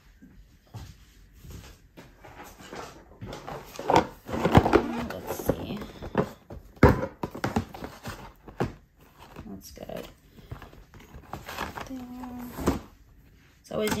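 Handling noise of toys and boxed packaging being moved about in a gift basket: irregular rustles, taps and knocks of cardboard and plastic, loudest about four to five seconds in and again near seven seconds. A brief low hum of a woman's voice comes near the end.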